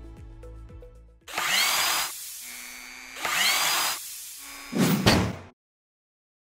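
Logo sting sound effects: a fading musical chord, then two loud drill-like mechanical whirs, each about a second long with a rising whine, and a shorter third burst before the sound cuts off suddenly.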